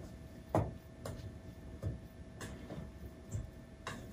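Spoon stirring stiff bread dough in a stainless steel mixing bowl, giving a handful of faint, irregular clicks and knocks against the bowl. The dough is getting harder to stir as the flour is worked in.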